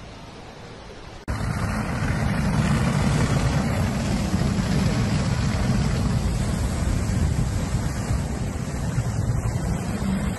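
Burning oil storage tank and the fire hose's water jet spraying it: a loud, steady rushing noise. It starts abruptly about a second in, after a quieter hiss.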